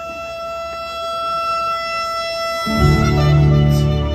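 Soprano saxophone holding one long note over a backing track. About two and a half seconds in, the held note gives way to a louder, lower chord from the backing that swells.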